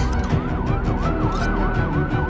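A fast police-style siren wailing, its pitch sweeping up and down a few times a second, laid over background music.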